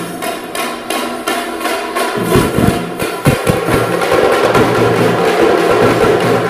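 Parai frame drums beaten with sticks in a fast, driving rhythm of sharp strikes, the playing growing louder and denser in the second half.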